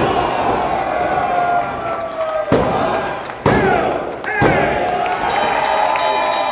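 A slam on the wrestling ring mat right at the start, then the referee's hand slapping the mat three times about a second apart for the pinfall count, under a shouting, cheering crowd. A ringing like the match bell starts near the end.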